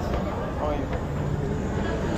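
Indistinct voices talking over the steady low rumble of a busy metro station, heard from a moving escalator.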